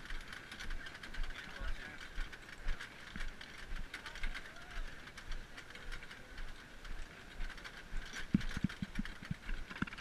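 Background talking from a group of people walking, with light rattling and clicking from a marching snare drum and its carrier. A few soft thumps come close together about eight seconds in.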